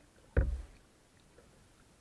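A single sharp, deep knock on the plastic hull of a sit-on-top kayak during paddling, about half a second in, dying away within a fraction of a second.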